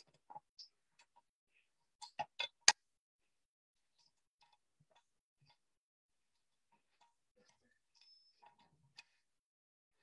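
Sharp metallic clicks and taps from a fly-tying vise being handled, with a quick run of four clicks about two seconds in, the last the loudest, then a few faint ticks.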